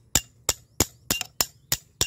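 Concrete block being tapped with a hard object about three times a second, each strike a sharp clink with a brief ring. It is a sound test of the block's solidity, set against a poor-quality block that crumbles when hit.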